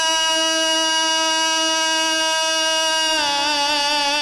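A man's chanting voice holding one long, steady note in a mourning lament, breaking into a wavering, ornamented turn about three seconds in.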